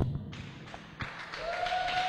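A pause in amplified speech in a large hall: low room noise with a soft tap about a second in, then a man's voice on the microphone starting up again near the end.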